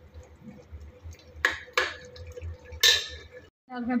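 Metal clinks from steel cookware: three sharp strikes, the last the loudest, each with a short ring.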